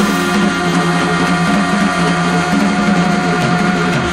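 Live jazz trio of tenor saxophone, organ and drums holding a long closing chord, with the notes sustained steadily over the drums.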